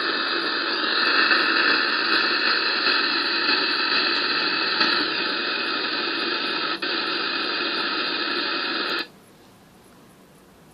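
Radio receiver static from an RTL-SDR dongle running SDR Sharp: the steady hiss of the receiver's noise, with no station in it, played back from an Audacity recording. It drops out for an instant about 7 seconds in and cuts off suddenly near the end, when playback stops.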